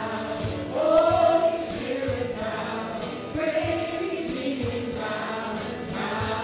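Live worship band playing a song: several voices singing together over acoustic guitars and a drum kit keeping a steady beat.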